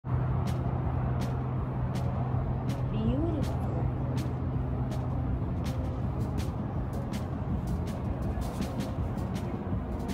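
Steady low hum and rushing noise on a cruise ship's open deck while the ship is under way, with faint voices and brief clicks over it.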